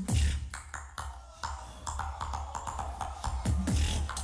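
Beatboxer performing a drop through a live sound system: a heavy, sustained bass with sharp clicking percussion snapping over it, hitting hardest right at the start.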